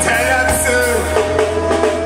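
Live reggae band playing: a sung vocal line over drum kit, bass and guitar.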